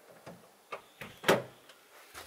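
A few short knocks and clicks, the loudest a little past the middle.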